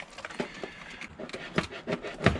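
Handling noises as a scooter carburettor is worked by hand into its inlet pipework: light rubbing and a few small clicks and knocks of the carb body against the fittings.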